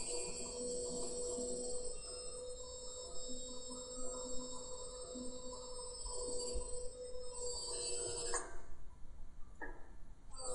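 Dry ice fizzling against the warmer glass of a beaker as it sublimes: a faint steady hum with a thin high whine. It cuts off suddenly about eight and a half seconds in with a knock, and a short tap follows about a second later.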